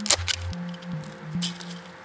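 Background music, with a few short crackles of double-sided tape being peeled off its roll and torn, once just after the start and again about a second and a half in.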